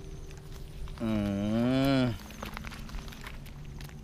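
A cow mooing once, a single drawn-out low call of about a second that rises and then falls in pitch.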